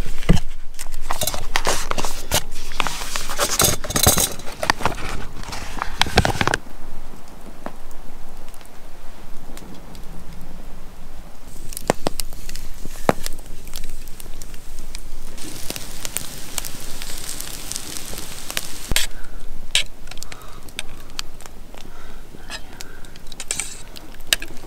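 A plastic food packet crinkling and being torn open for the first several seconds, then a wood campfire crackling, with scattered sharp pops under a pan of onions and butter.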